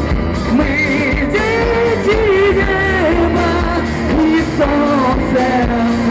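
Live rock band in an acoustic set: strummed acoustic guitars, acoustic bass guitar and drums, with a wavering melody line over them.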